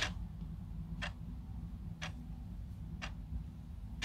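Clock ticking steadily, one sharp tick a second, over a low steady hum.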